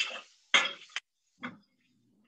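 Metal tongs clinking against a stainless steel skillet while shredded chicken is stirred in it: two sharp clinks about half a second apart, the second ringing briefly before cutting off abruptly.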